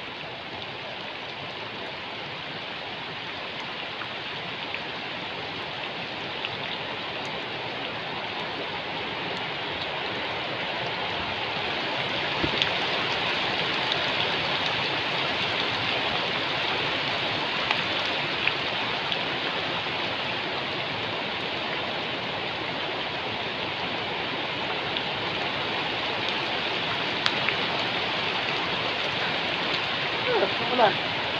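Heavy rain falling on the surface of a creek: a steady hiss of drops on water that grows louder over the first dozen seconds and then holds, with occasional sharper ticks of single drops close by.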